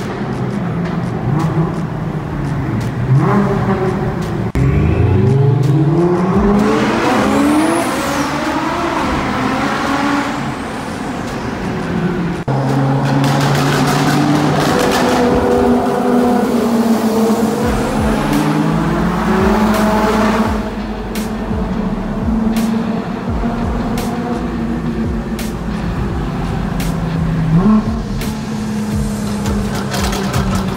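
Sports car engines accelerating hard, the revs climbing in several long rising pulls over the first ten seconds or so, then running more steadily under load.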